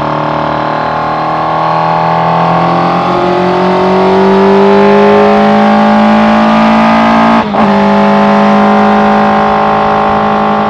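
Suzuki Hayabusa inline-four motorcycle engine in a Raptor R kit car, heard from the cockpit pulling hard under acceleration, its pitch climbing slowly. About seven and a half seconds in it cuts out for an instant on an upshift, then runs on steadily in the higher gear, with wind rushing past.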